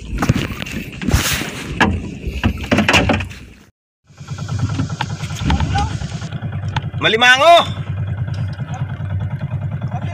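Wind buffets the microphone, with knocks and water noise, for the first few seconds. After a brief cutout, a motorised outrigger fishing boat's engine runs steadily with a fast, even throb. A person gives a drawn-out wavering call over it about three seconds later.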